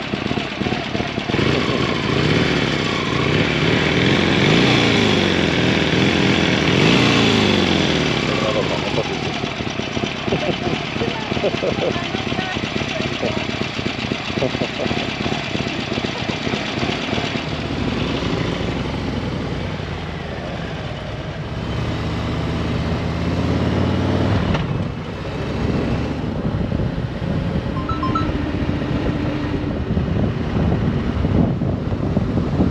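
Harley-Davidson V-twin motorcycle engines, a Sportster 1200 among them, running at riding speed, their pitch rising and falling as the throttle opens and closes in the first several seconds and again later on.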